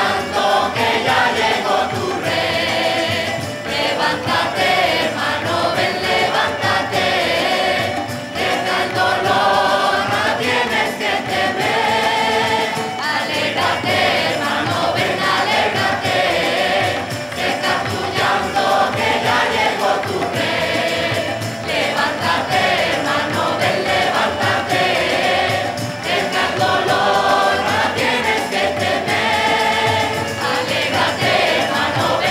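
A choir singing a devotional song in unison phrases, with instrumental accompaniment and a steady percussion beat.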